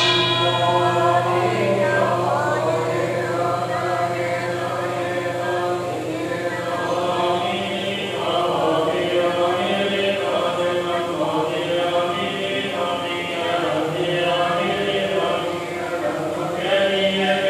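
A congregation chanting Buddhist prayers together in a steady, even drone. A bell is struck once at the very start and rings out, fading over the first couple of seconds.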